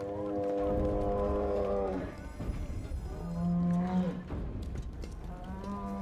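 Three long, mournful calls from a large film dinosaur, the Brachiosaurus on the island's dock. The first is held about two seconds, the second is shorter and drops in pitch as it ends, and the third comes near the end. Orchestral score and a deep rumble run underneath.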